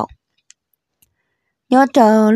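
A voice speaking stops just after the start. Then comes a pause of almost total silence, broken only by two faint ticks. The voice starts again near the end.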